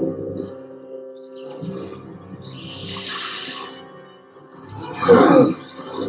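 The Gorn, a lizard-like alien, hissing and growling over a dramatic orchestral score, with the loudest growl about five seconds in.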